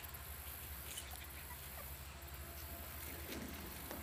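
Faint outdoor background with a steady low hum, and a few small, faint squeaks and rustles from miniature schnauzer puppies wrestling on grass.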